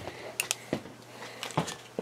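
A handful of short, sharp clicks and taps, irregularly spaced, over a faint steady low hum.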